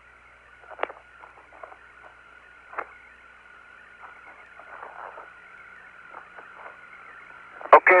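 Open space-to-ground radio channel between transmissions: a steady, narrow-band hiss with a faint steady tone in it and scattered crackles, broken by two sharp clicks, one just under a second in and one near three seconds in.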